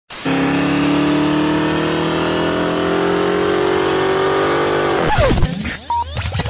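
Car engine accelerating hard, its pitch rising slowly and steadily for about five seconds, then falling away sharply near the end.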